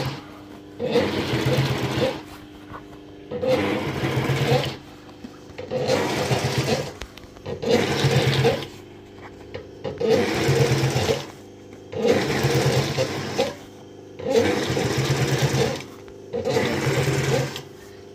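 Industrial sewing machine stitching a heavy leatherette seat cover in short runs of about a second each, stopping and starting roughly every two seconds as the seam is guided along.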